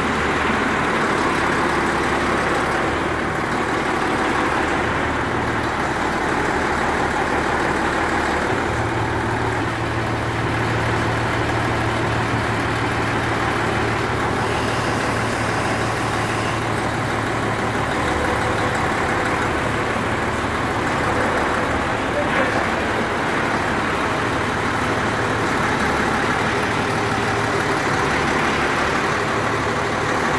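Tatra 162 prototype truck's diesel engine idling steadily, its engine speed stepping up slightly about nine seconds in.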